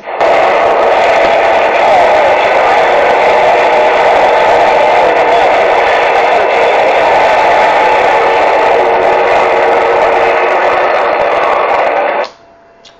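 CB radio receiving a distant skip (DX) transmission: a loud, steady rush of static that switches on abruptly and cuts off abruptly near the end as the far station unkeys. Any voice in it is buried too deep in the noise to make out.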